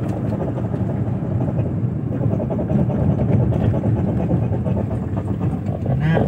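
Cabin noise of a Suzuki DA64V van braking: a steady low rumble carrying the braking noise that the owner traced to a dried-out, ungreased front brake caliper pin.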